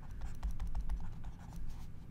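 Stylus scratching and tapping on a drawing tablet while handwriting words: a run of quick, light clicks over a low rumble.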